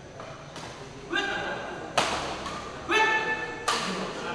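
Badminton rally in a hall: two sharp, loud racket-on-shuttlecock hits, about 1.7 s apart, each coming just after a short shout.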